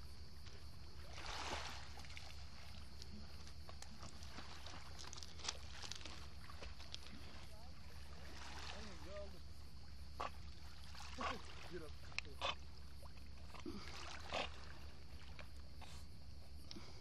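Boxer dog swimming in shallow sea water, with short, faint splashes from its paddling scattered over a steady low hum.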